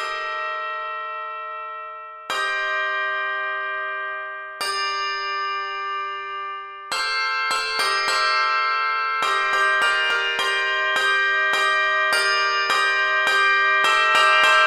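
Two-octave handbell choir playing: chords struck about two seconds apart, each left to ring and fade, then from about seven seconds in a louder, quicker passage of repeated chords.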